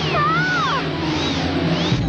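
Cartoon soundtrack: music with a wavering, swirling magic sound effect as a jewel's power flares. About a quarter second in comes a short high cry that glides up and then down.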